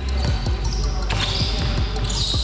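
Basketball being dribbled hard on a hardwood court in quick repeated bounces, with background music playing.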